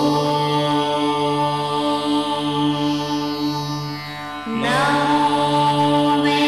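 Hindu devotional music with a mantra chanted in long, held notes. Just before five seconds in, a short dip gives way to a new phrase that slides up in pitch.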